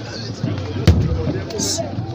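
A large wooden ceremonial drum gives a single sharp, heavy beat about a second in, one of a slow series of strikes, over crowd voices.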